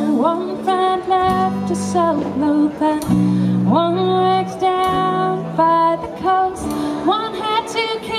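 Live acoustic band music: a woman singing a melody that slides up into its notes, over strummed acoustic guitar and a low bass line.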